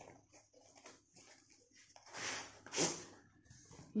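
A cardboard shipping box being opened by hand: faint rustling and small clicks, then two short scraping, rushing sounds about two and three seconds in as the product box is slid out of the cardboard.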